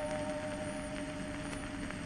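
Last chord of a dance orchestra waltz on a 78 rpm shellac record dying away, under the record's steady surface hiss and a few crackles.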